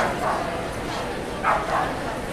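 A dog barking: one sharp bark at the start, then two quick barks about a second and a half in, over background chatter.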